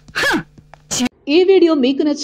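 A short sound falling steeply in pitch, like a gasp or exclamation, and a brief burst about a second in. Then a woman starts talking.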